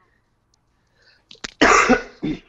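A pause, then a person coughs once, loudly, near the end.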